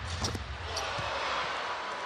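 A basketball bouncing on a hardwood court, a few dribbles, over the steady noise of an arena crowd.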